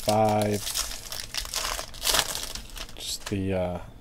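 Shiny foil wrapper of a 2017 Bowman Draft Jumbo trading-card pack crinkling as it is opened and the cards are pulled out. A man's short voiced sound comes at the start and again near the end.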